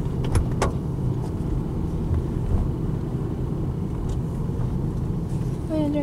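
Car driving slowly, its steady low engine and road rumble heard from inside the cabin, with a couple of light clicks about half a second in.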